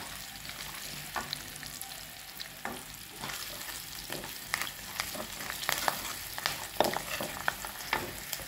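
Crushed garlic cloves frying in hot oil in a clay pot while a wooden spoon stirs them against the pot's sides: a low steady sizzle broken by frequent short sharp clicks.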